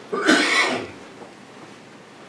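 A person clears their throat with one short, sharp cough lasting under a second, then only quiet room tone.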